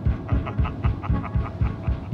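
Instrumental rock-soundtrack music: a steady pulsing low beat about four times a second, heavier every half second, with short chopped higher tones over it.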